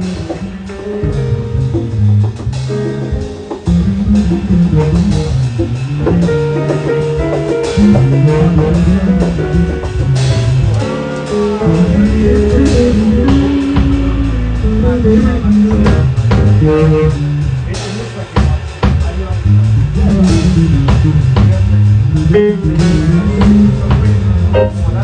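A live jazz band playing: an electric bass guitar carries a moving bass line under a drum kit and conga drums.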